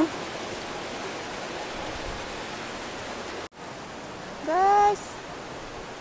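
Steady rushing hiss of a shallow mountain stream running over rocks. A woman's voice gives one short exclamation about three-quarters of the way through.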